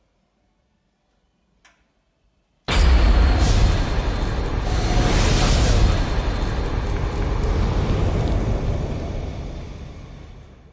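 Outro logo sound effect: a sudden loud explosion-like blast about three seconds in, followed by a long fiery rushing sound that slowly fades out near the end.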